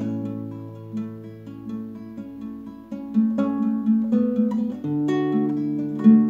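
Nylon-string classical guitar played solo, chords plucked and left to ring, softer at first and fuller from about three seconds in.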